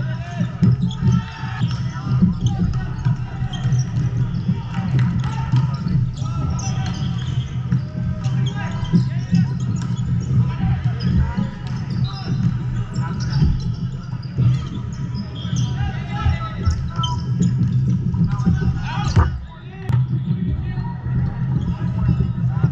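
Indoor volleyball play in a large hall: volleyballs repeatedly striking hands and the hardwood floor, mixed with indistinct shouts from players. A steady low hum runs underneath throughout.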